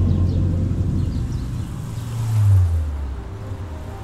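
A deep low rumble that swells to a peak about two and a half seconds in, with a faint rushing hiss, then dies away.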